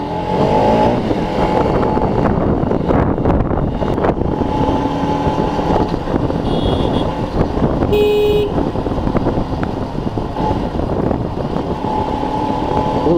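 Motorcycle running along a road at low speed, its engine noise mixed with wind on the microphone. A horn toots once, briefly, about eight seconds in.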